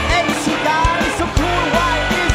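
Live band music with a steady drum beat and bass, and a voice or lead line sliding in pitch over it.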